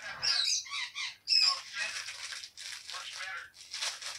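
A baby's high-pitched squeals and babble, mixed with the crackle of a plastic shopping bag being grabbed and crumpled by small hands, in irregular bursts.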